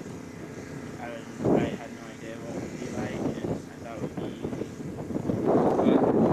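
Indistinct speech from a person talking to the group outdoors, broken by pauses; the voice grows louder near the end.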